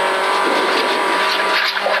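A Ford Fiesta V1600 rally car's 1.6-litre four-cylinder engine, heard from inside the cabin, running loud at steady revs under full throttle, over a steady rushing noise from the gravel road under the tyres.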